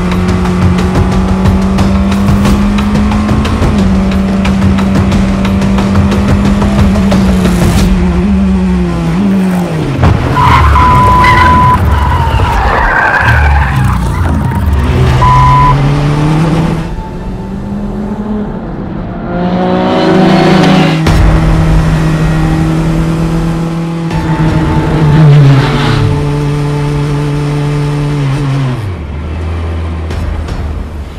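Praga R1 race car's Renault engine in the back, heard from the cockpit at racing speed, holding high revs before the revs fall away sharply about ten seconds in, with a couple of brief high-pitched squeals. In the second half the engine picks up again and steps through the gears, rising and falling.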